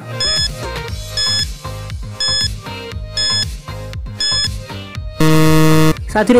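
Quiz countdown timer sound effect: five short high beeps, one a second, over background music with a steady beat, then a loud, lower buzzer held for most of a second near the end, marking that the time is up.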